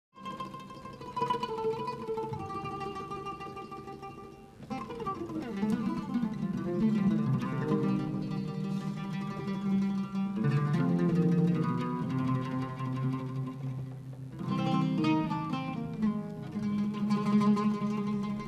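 Oud played with a plectrum: runs of plucked notes in phrases, a new phrase starting with a strong attack about four and a half seconds in and again near fourteen and a half seconds.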